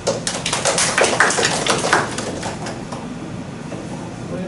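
Brief clapping from a few people, a quick irregular patter of sharp claps that dies away after about two and a half seconds.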